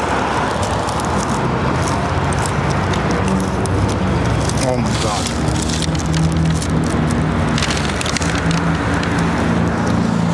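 Street traffic: a steady roar of passing cars, with an engine hum that sets in about three seconds in and holds, and scattered short clicks.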